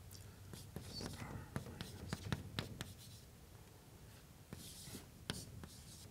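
Chalk writing on a blackboard: repeated sharp taps as the chalk strikes the board, with scratchy strokes about a second in and again near the end.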